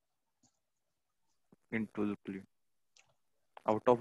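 Silence, then a few short spoken syllables about halfway through and again just before the end; speech only.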